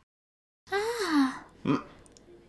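A character's breathy vocal exclamation with a falling pitch, like a gasp or sigh, followed by a short second vocal sound; it starts after a moment of dead silence.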